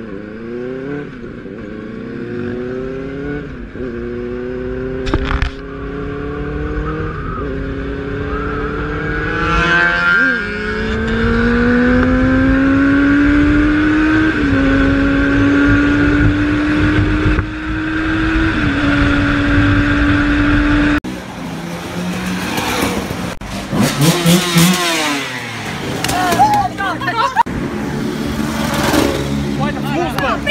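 Benelli 600i inline-four motorcycle engine accelerating through the gears, its pitch climbing and dropping back at each upshift several times, then running at a steady cruise. About two-thirds through it gives way to street noise of motorcycles passing close by, their pitch sweeping as they go past, with voices.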